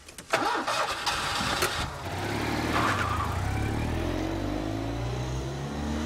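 Small car engine revved hard with a sudden burst about a third of a second in, then running on with a steadily rising engine note as the car pulls away and accelerates.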